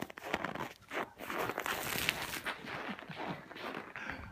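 Boiling water flung from a saucepan into air far below freezing, flash-freezing into a cloud of ice fog: a rushing hiss with many small crackles and crunches, building from about a second in.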